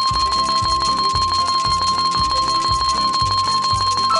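Slot game's win count-up sound effect: a steady high tone held over rapid ticking and a bass beat pulsing about twice a second while the win total rolls up. The tone stops right at the end.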